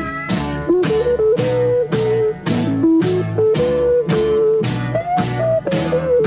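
Rock band playing an instrumental passage: an electric guitar carries the melody with short slides between notes, over a steady drum beat of about two hits a second and a bass line.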